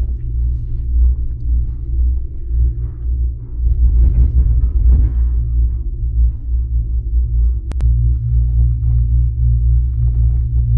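Low, steady rumble inside a moving gondola cabin as it travels up the cable, with a sharp double click about three-quarters of the way through, after which the tone of the rumble shifts slightly.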